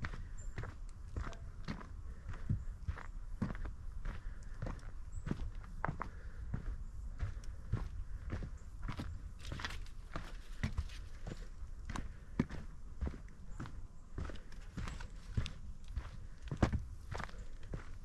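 Footsteps of a hiker walking on a dirt forest trail, at a steady pace of about two steps a second, over a low steady rumble.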